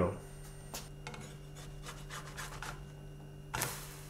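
Quiet room tone with a steady low hum, faint rubbing and rustling, and a few light ticks; a brief hiss near the end.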